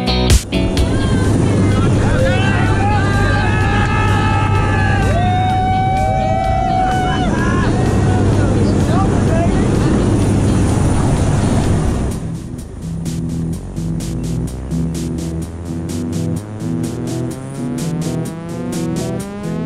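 Propeller aircraft engine drone heard inside the cabin, with voices shouting and laughing over it. About twelve seconds in it gives way to music with a steady beat.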